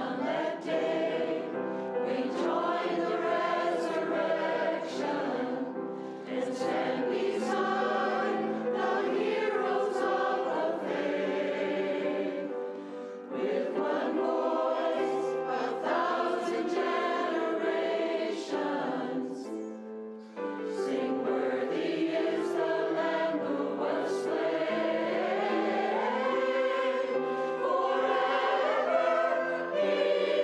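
Mixed church choir of men's and women's voices singing a sacred anthem in sustained phrases, accompanied by piano, with brief breaks between phrases about halfway through.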